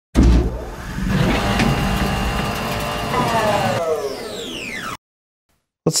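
A produced intro sound effect: a steady engine-like drone that starts abruptly, with several falling pitch glides in its last second, then cuts off suddenly about a second before the end.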